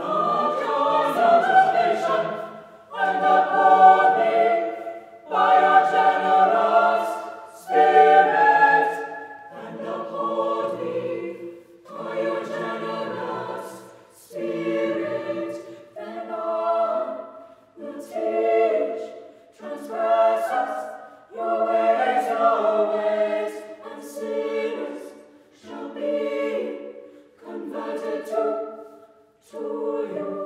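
Mixed-voice chamber choir of men and women singing a cappella in short phrases of about two seconds each, with brief breaks between them.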